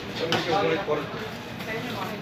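Indistinct speech: people talking, with no clear words.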